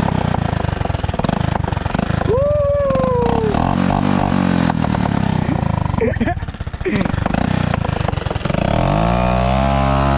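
Motorcycle engine running, revving up near the end. A person's drawn-out call a couple of seconds in and short vocal sounds later.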